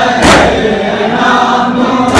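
A crowd of men chanting a nauha (mourning lament) in unison, with one loud collective chest-beating slap of matam about a third of a second in that keeps the lament's beat.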